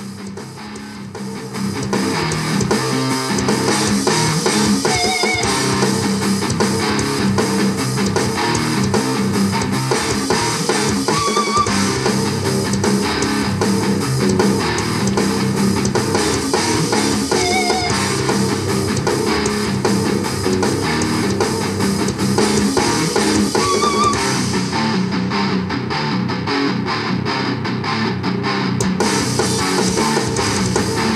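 A pair of Rockville Rock Party 6 Bluetooth party speakers playing a rock song with electric guitar and drums, picked up by the camera microphone. It gets louder over the first two seconds and then plays loud and steady.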